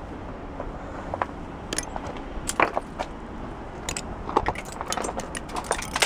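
Icicles being knocked and broken off a roof edge by a gloved hand, with scattered clinks and ticks of snapping ice that come more often near the end.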